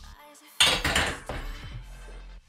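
A plate-loaded barbell set down onto metal rack stands: a loud metal clank about half a second in, then a few smaller rattles of the plates and bar that die away within a second. Background electronic music plays underneath.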